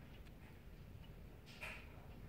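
Near silence: faint low room tone, with one brief faint sound near the end.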